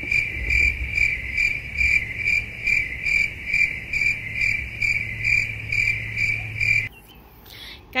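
Edited-in cricket-chirp sound effect of the kind used to fill a waiting pause: a high chirp pulsing about twice a second over a low hum. It cuts off abruptly about a second before the end.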